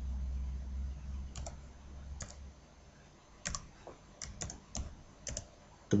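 Computer keyboard keys clicking as a word is typed: two single taps, then a quicker run of about eight keystrokes in the second half. A low hum sits under the first half and then stops.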